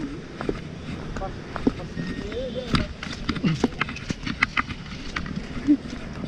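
Irregular light clicks and knocks from a person walking while holding a radio transmitter, with faint voices in the background.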